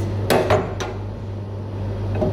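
Three quick knocks in the first second as a cut melon half is handled and set on a plastic cutting board, over a steady low hum.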